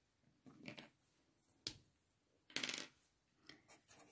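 Plastic felt-tip marker being picked up from a wooden desk and uncapped: a sharp plastic click, then a short scrape, with a few faint ticks near the end.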